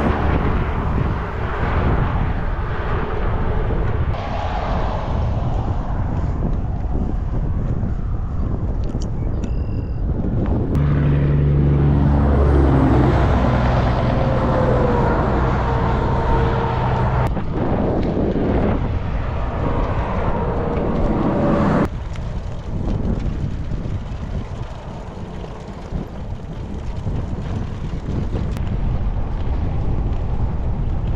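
Wind rushing over the bike-mounted camera's microphone and tyre noise while cycling along a highway, the sound shifting abruptly a few times. A motor vehicle passes between about 11 and 17 seconds in, its engine drone falling in pitch.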